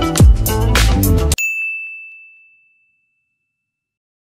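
Background music with a beat stops abruptly about a second and a half in. A single high, bell-like ding rings out in its place and fades away over about a second.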